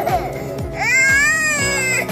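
A baby crying out: one long wail that rises and then falls in pitch, starting about three quarters of a second in, over background music with a steady beat.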